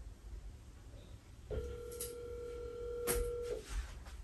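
Telephone ringback tone as an outgoing call rings: one steady ring about two seconds long, starting about one and a half seconds in, with two short clicks during it.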